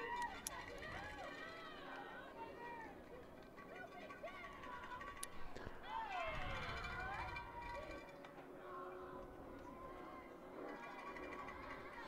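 Faint, distant voices of players and spectators at a softball field, calling out and chanting in a sing-song way, growing a little louder about six seconds in. A single sharp click comes about five seconds in.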